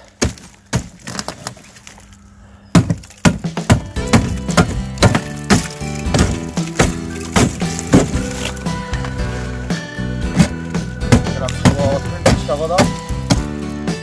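A crowbar knocking and prying chunks of render and mesh off a wall: a few sharp blows in the first second, then further blows and breaking under loud background music with a steady beat that comes in about three seconds in.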